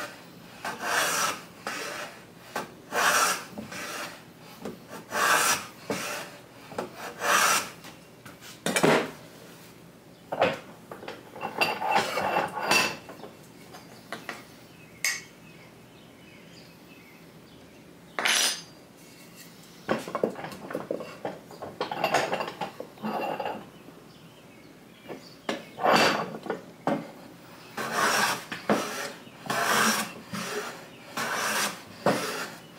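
Metal hand plane taking shavings off the edge of a hardwood board, a rasping swish on each push stroke, roughly one stroke a second, with a few seconds' pause partway through. The edge is being planed true to close gaps in a glue joint.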